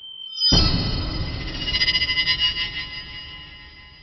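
A short electronic musical sting: a faint high tone, then a sudden ringing hit about half a second in that fades away over about three seconds.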